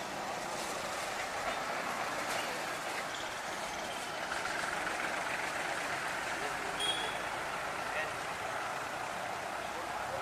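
Steady outdoor background noise with faint, indistinct voices, and a brief high chirp about seven seconds in.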